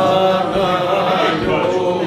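A man's voice sings a long, wavering phrase of a Cretan syrtos, easing off near the end, over Cretan lyra, laouto and drum.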